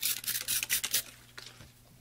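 Trigger spray bottle misting rubbing alcohol onto the tops of freshly poured cold process soap loaves: a quick run of short hissing sprays in the first second, then quieter handling. The alcohol is sprayed on to prevent soda ash.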